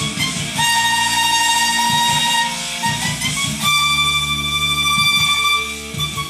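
A violin playing a slow bowed melody of long held notes, the note changing about half a second in and again past halfway to a higher one held to the end.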